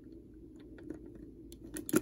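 LEGO bricks clicking faintly as a piece is pressed onto a built model, with a few sharper clicks near the end.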